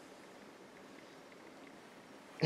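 Near silence: room tone, with a few faint ticks about a second and a half in.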